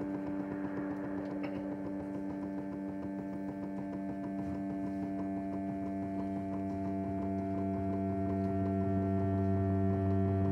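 Sustained instrumental drone on long held notes, with bowed cello among it, slowly growing louder; a deeper note swells in during the second half.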